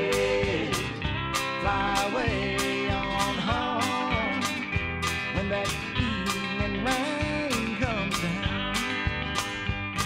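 Country-rock band music: a steady drum beat, about two hits a second, under guitars with sliding, bending notes.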